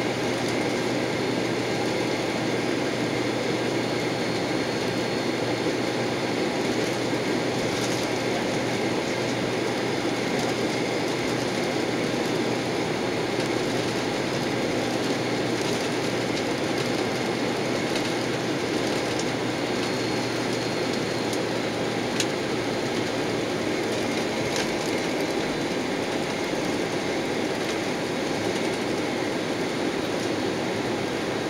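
Steady rumble and hum inside a jet airliner's cabin as it taxis on the ground with its engines at idle, with a few faint clicks along the way.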